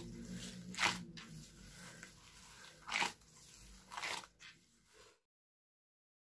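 Gloved hands squeezing and mixing soft biscuit dough with toasted sesame seeds in a glass bowl: quiet squishing, with louder squelches about a second in, at three seconds and at four seconds. The sound cuts off suddenly about five seconds in.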